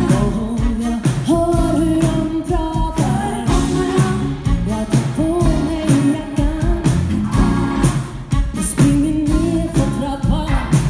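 Live funk-soul band with a woman singing lead over drums, bass and keyboards, to a steady beat.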